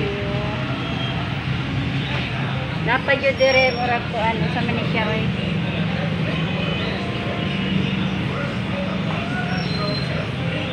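Street traffic noise with a steady low hum, and voices talking in the background about three to five seconds in.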